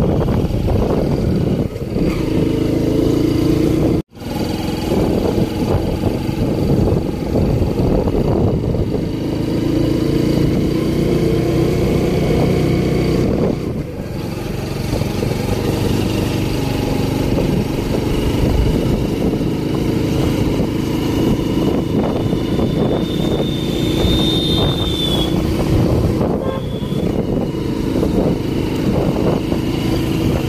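Scooter engine running at cruising speed with heavy wind rush over the microphone while riding. The sound drops out abruptly for a moment about four seconds in.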